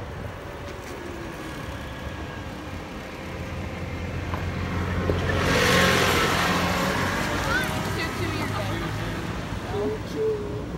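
Go-kart motor running with a steady low hum as it drives along. About five seconds in, a rush of noise swells up, loudest around six seconds, then eases off.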